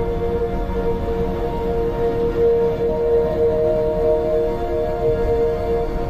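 Ambient background music of long, steady held notes, with a low rumble underneath.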